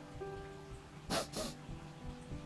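Soft background music of plucked guitar notes, with two quick sniffs a little past the middle from a person who has been crying.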